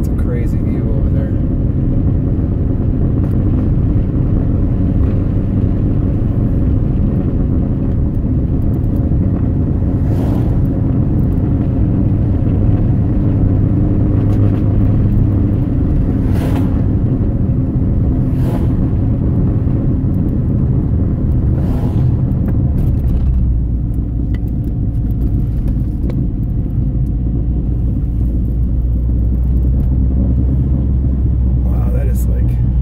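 Inside the cabin of a 2001 Saab 9-5 Aero on the move: its turbocharged four-cylinder engine running under a steady road and tyre rumble, with a few short knocks. About three-quarters of the way through, the engine note drops lower.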